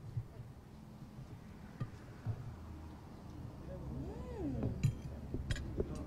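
A few light clinks of a metal fork against a ceramic plate as pieces of fried pork are picked up, over a low steady hum.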